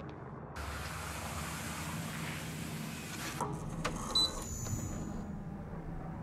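An automatic sliding door running with a hiss for about three seconds, then a few sharp clicks and a brief high electronic beep, over a low steady hum.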